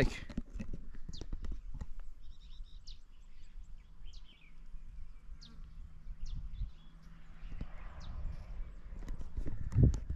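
Soft, irregular low knocks and rustling, with a few short, faint high chirps scattered through the middle.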